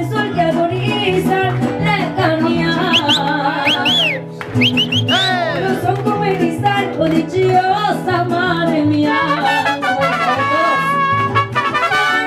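Mariachi band playing an instrumental passage, with trumpets over strummed guitars and a steady stepping bass line underneath. There is a brief drop in loudness about four seconds in.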